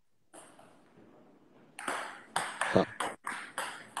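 A run of bright, ringing pings, several a second, starting about two seconds in after a quiet opening.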